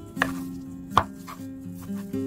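Chef's knife chopping imitation crab sticks on a bamboo cutting board: a few separate knocks of the blade against the wood, the loudest about halfway through, over soft background music.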